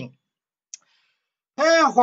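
A man's speech breaks off for a pause of about a second and a half. One short, sharp click falls in the pause, and then the talk resumes.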